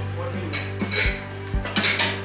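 A metal ladle clinking and scraping against a wok as chunks of meat are stirred, a few sharp metallic clinks, over background music with a beat.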